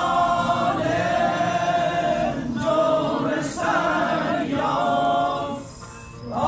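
A group of people singing together unaccompanied, in long held phrases, with a short break near the end.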